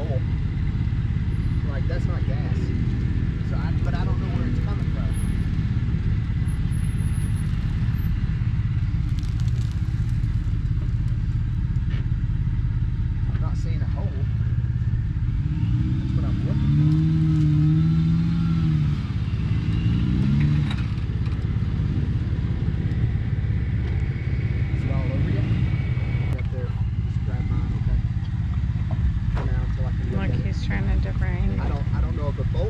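Jeep Wrangler engine working under load as it crawls through a dirt ditch, a steady low rumble with several seconds of revving about halfway through, the pitch rising and falling as the driver works the throttle.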